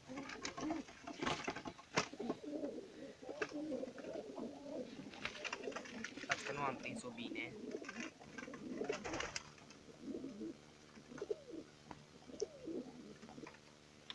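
Domestic pigeons cooing repeatedly, with a few sharp knocks and clatters of birds being handled in the loft.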